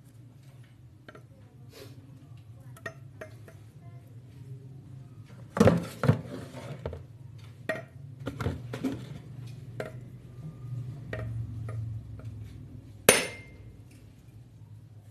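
Clinks and knocks of a metal basin and cleaver being handled while a coconut is turned over the basin. Near the end comes a single sharp strike with a brief metallic ring, as the cleaver blade hits the coconut shell to crack it. A low steady hum runs underneath.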